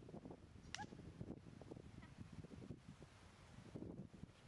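Near silence: faint outdoor background with low rustling, and one brief, faint high-pitched call about a second in.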